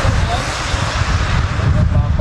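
Wind buffeting the microphone: a loud, irregular low rumble with a hiss above it.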